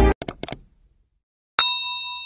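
A single bell 'ding' sound effect from a subscribe-button animation, about one and a half seconds in, ringing with several clear tones and fading away. Before it, a few quick clicks as the intro music cuts off.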